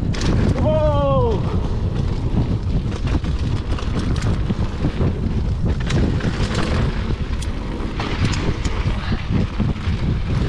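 Mountain bike rolling fast down a dirt trail: wind buffets the action-camera microphone over a constant rumble of tyres on packed dirt, with frequent clicks and rattles from the bike. About a second in there is a short whine that falls in pitch.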